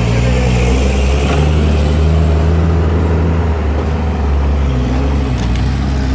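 Hydraulic crawler excavator's diesel engine running loudly under load as its bucket digs into earth, the engine note shifting up and down as the arm works.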